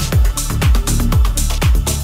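Progressive house music: a four-on-the-floor kick drum at about two beats a second, with a hi-hat on the off-beats between kicks over a steady bass line.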